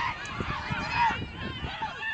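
Several voices of players and spectators shouting and calling at once during rugby play, in short rising-and-falling calls, loudest about a second in, over wind rumble on the microphone.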